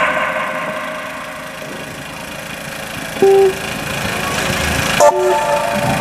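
Amplified street dangdut band's sound system in a pause between introductions: a held note fades away over a steady hum. Then come two short, same-pitched beeps about two seconds apart, the second just after a click.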